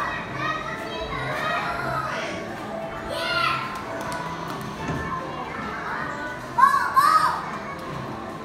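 Children's voices and high calls on a moving carousel, over steady background music, with louder calls about three seconds in and again near the end.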